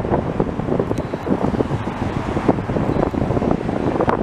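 Wind buffeting the microphone over the rumble of passing cars and a long freight train rolling by.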